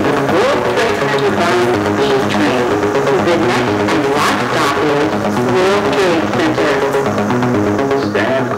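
Music: an electronic backing track with a steady, repeating pulsing synth pattern and a gliding melody line above it.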